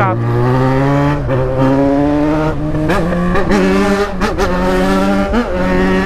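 Yamaha XJ6's inline-four engine pulling the bike along, its note climbing over the first second and then holding, with several brief dips in pitch.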